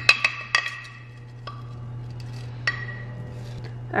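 Rolled oats poured from a glass jar into a small wooden bowl, then a metal spoon worked in the bowl. There are a cluster of sharp clinks that ring briefly at the start, and single clinks about a second and a half and nearly three seconds in, over a steady low hum.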